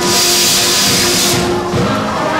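A loud, sudden hiss over a concert band's sustained chord, cutting off about a second and a half in; the band's music carries on underneath.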